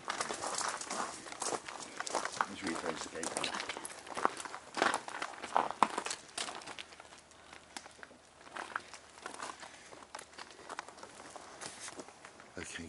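Footsteps and rustling handling noise with scattered clicks as people move about in the dark, with low, indistinct voices. It is busiest for about the first seven seconds, then sparser and quieter.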